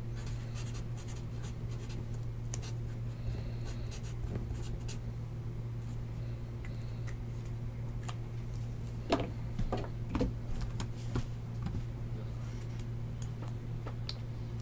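Light handling noises at a desk: scattered soft clicks and rubbing, with a cluster of louder knocks about nine to eleven seconds in, over a steady low hum.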